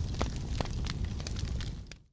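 Fire sound effect: a steady rush of flames with scattered sharp crackles, fading out near the end.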